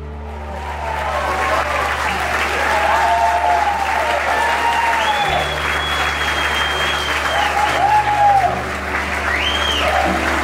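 A crowd of guests applauding and cheering, swelling about half a second in, with shouts rising above the clapping and soft background music underneath.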